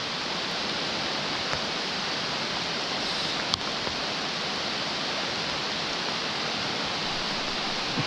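Steady rushing of a rocky stream's riffle over stones, mixed with heavy rain falling on the water.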